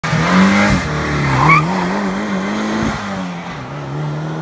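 Turbocharged Lada Niva engine, running on LPG, revving hard under acceleration, its pitch climbing and dropping in steps. A short squeal comes about a second and a half in.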